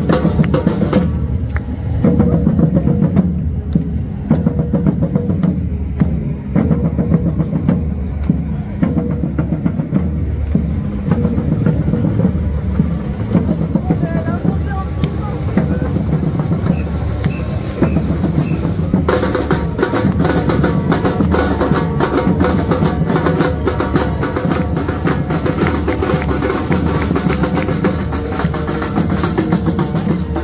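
A street drum group playing a steady rhythm on large surdo bass drums and snare drums struck with mallets and sticks. About two-thirds of the way in, the crisp high strokes get louder and brighter.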